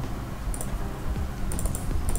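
Clicking of a computer keyboard and mouse while the design software is operated, in a few short clusters about half a second and a second and a half in.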